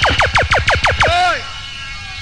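Rapid string of falling electronic zap sweeps, about seven or eight a second, over bass-heavy reggae sound-system music. The music and the zaps cut out about one and a half seconds in, leaving a low hum.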